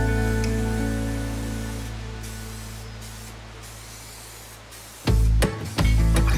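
SEM Color Coat aerosol spray can hissing in short bursts with brief pauses as paint goes onto a vinyl seat, under background guitar music. The music fades, then comes back loud with plucked notes about five seconds in.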